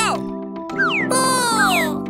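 Cartoon squirrel voices making about three quick, squeaky calls that slide down in pitch, over a steady background music tune.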